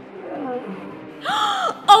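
A woman's startled gasp with a voiced 'oh', short and sharp, a little over a second in.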